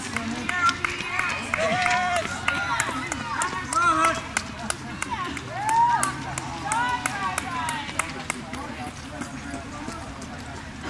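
Indistinct voices of spectators chatting and calling out, with words that can't be made out, fading away over the last couple of seconds. Light clicks run underneath through most of it.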